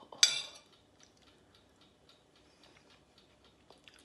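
A metal fork clinks once, sharply, against a ceramic bowl with a short ring, then faint small ticks of cutlery.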